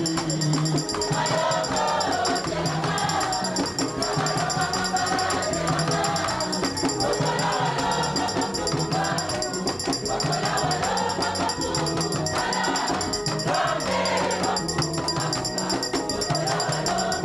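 Congregation singing a hymn together in chorus, many voices in unison, with shaken percussion keeping a steady beat.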